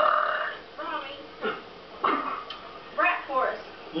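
A man belching: a long belch, then several shorter ones spaced through the next few seconds.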